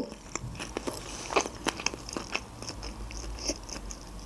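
Close-miked chewing of a mouthful of sushi roll: a string of small, irregular wet mouth clicks.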